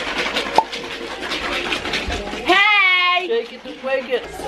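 A high, wavering, drawn-out vocal call from a person, lasting just under a second, comes about two and a half seconds in. Before it is a stretch of noisy hiss with small clicks and one sharp click.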